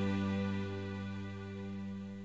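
The song's final piano chord ringing out after the last sung line, slowly dying away with no new notes struck.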